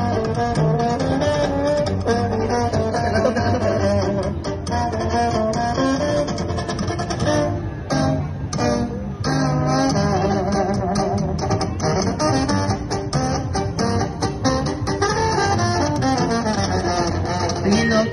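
Instrumental break of a corrido tumbado-style backing track: plucked guitars over a deep bass line, with no singing.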